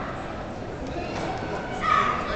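Background chatter of a crowded hall, with a short high-pitched shout near the end, a young martial artist's kiai on a strike.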